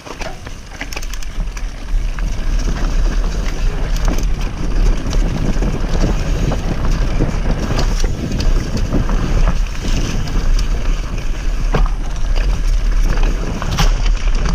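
Wind rumbling on a camera microphone as a mountain bike rides fast down a dirt trail, building over the first two seconds, with tyres crunching over dry leaf litter and short knocks and rattles as the bike hits bumps.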